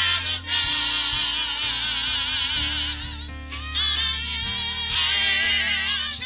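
A small gospel praise team of women's voices and a man's voice singing together, with wavering vibrato on held notes, over sustained low bass notes from the accompaniment.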